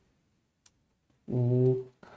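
Near silence with a single faint computer-keyboard keystroke, then a short held voiced "uhh" of hesitation near the end.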